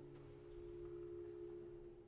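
Quiet held tones from contemporary music for symphony orchestra and live electronics: a few close pitches sustained together, like a pure electric hum, swelling slightly after the first half second and easing off near the end.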